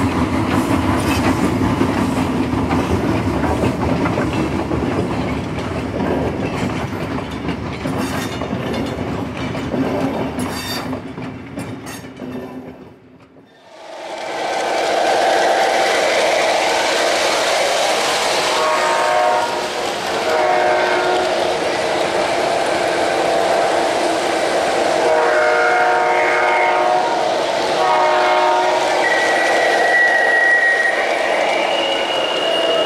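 O-gauge model train running on three-rail track, with the steady sound of its wheels and several horn blasts from its onboard sound system. The sound under the opening title card fades out about halfway through, and the train sound starts soon after.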